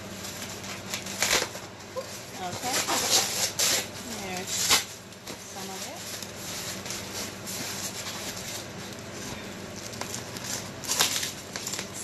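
Packaging rustling and crinkling as a statue is unwrapped by hand, in several short sharp bursts, most around the first five seconds and again near the end.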